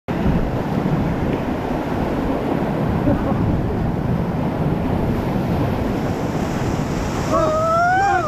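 Whitewater rushing and splashing around an inflatable raft as it runs a rapid, with wind buffeting the microphone. Near the end a pitched, rising sound comes in over the water noise.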